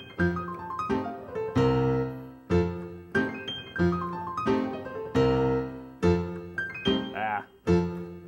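Piano playing a stride-piano lick as fast as possible: quick descending right-hand runs over accented chords, the same short phrase coming round several times.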